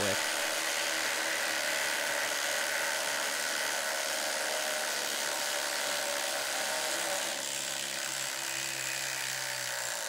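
Two Milwaukee cordless impact drivers, an M12 FUEL and a compact M18 brushless, running together in reverse to back stainless steel lag screws out of treated timber. The sound is steady and cuts off at the end.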